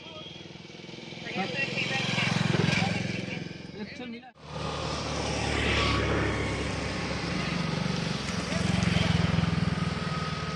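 Raw outdoor ambience of people talking with a motor vehicle engine running. The sound breaks off sharply about four seconds in and resumes with the same voices and engine noise.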